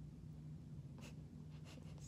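Soft scratchy rubbing of hands against the skin of a face: a few short faint strokes begin about a second in, over a steady low hum.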